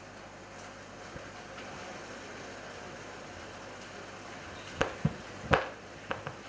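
Steady low hum of a hall's public-address system, then three sharp knocks near the end as the podium microphone is handled before a speech.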